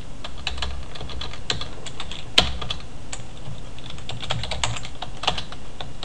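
Typing on a computer keyboard: a run of irregular keystrokes, with one louder, sharper click about two and a half seconds in.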